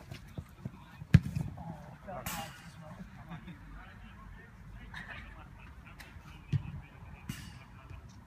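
A futsal ball being kicked: a sharp thud about a second in, the loudest sound, and another about six and a half seconds in, with faint distant shouts of players between.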